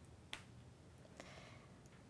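Near silence with faint marker strokes on paper: a sharp tick about a third of a second in, then a softer tick and a short faint scratch just after a second in.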